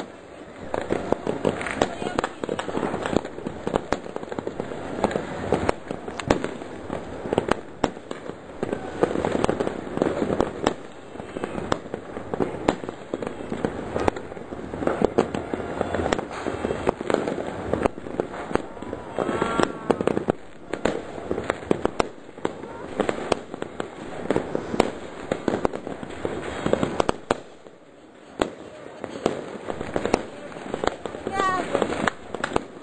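Many fireworks and firecrackers going off at once, a dense run of bangs and pops with hardly a pause, easing briefly near the end.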